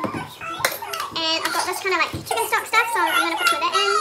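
A young child talking and vocalising in a high voice, almost without pause.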